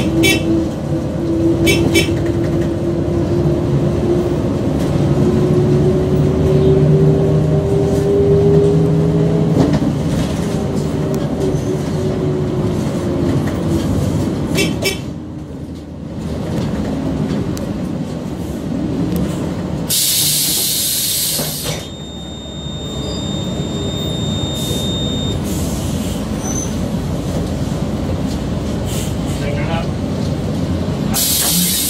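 City bus engine and drivetrain running under way, heard from inside the bus, with a whine that rises in pitch over the first ten seconds as the bus pulls away. About twenty seconds in there is a sharp two-second hiss of released air from the air brakes, followed by a steady high tone lasting about three seconds.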